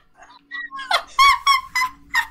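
High-pitched giggling in a run of about six short, squeaky bursts.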